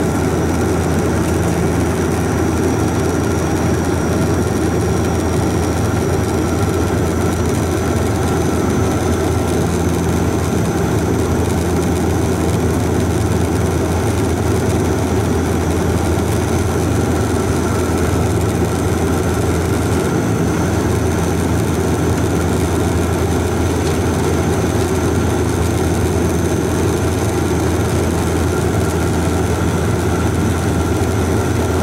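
Airliner cabin noise during the descent to landing: the steady drone of the engines and airflow heard from inside the cabin, with a thin high whine held throughout.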